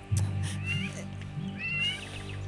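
Background music with a steady low drone, over which two short, high, wavering calls sound, about half a second in and again about a second and a half in.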